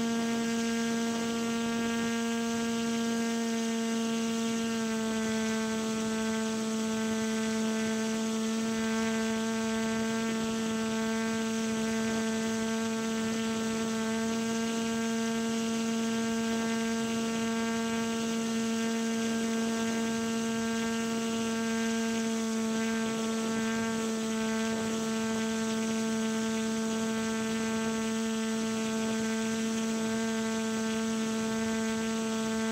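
Motor and propeller of a radio-controlled model paramotor running at a steady cruise, a constant hum with a slight change in pitch about five seconds in.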